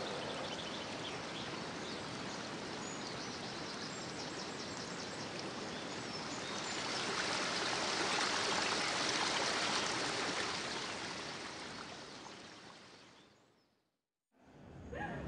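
Flowing stream water, a steady rushing that swells in the middle and fades out to silence at the end, with faint bird chirps in the first few seconds.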